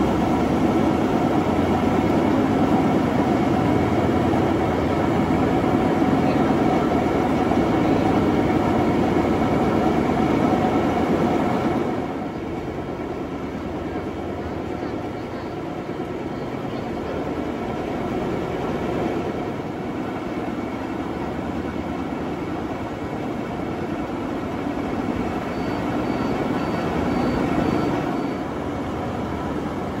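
Overburden belt conveyor running: a steady mechanical rumble of belt and idler rollers with a faint whine on top. It turns quieter about twelve seconds in.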